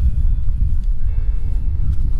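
Wind rumbling on the microphone as a low, steady buffeting. About a second in, faint background music comes in as soft held notes.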